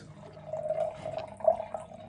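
Red wine poured from a height in a thin stream into a stemmed glass wine glass, splashing steadily into the wine already in the glass.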